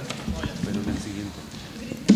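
Faint murmur of voices across a meeting room, with a few light knocks.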